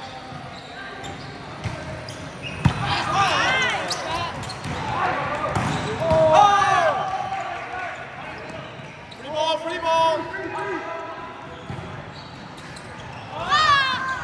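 Indoor volleyball rally: a single sharp smack of the ball about three seconds in, with players shouting calls several times.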